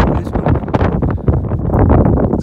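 Wind buffeting the microphone: loud, gusty noise with no steady tone.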